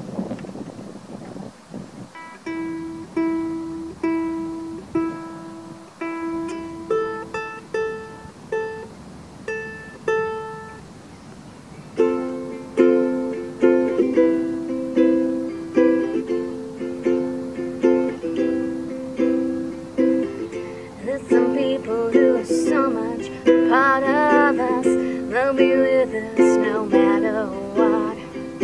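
Acoustic ukulele: a picked intro of single notes, then strummed chords in a steady rhythm from about twelve seconds in, with a voice starting to sing over the strumming near the end.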